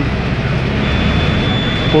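City bus cabin noise: the engine and road rumble of a moving bus heard from inside. A thin, steady high whine comes in about a second in.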